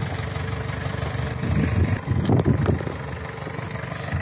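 Mahindra CJ500 jeep's diesel engine idling steadily as the jeep crawls along by itself in first gear and four-wheel-drive low, with no throttle applied.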